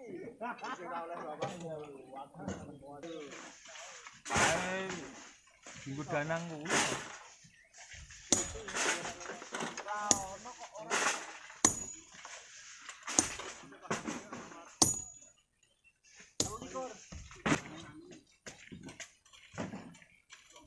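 Men's voices talking and calling, then from about eight seconds in a hammer striking rock about every second and a half. Each blow is a sharp clink with a brief metallic ring.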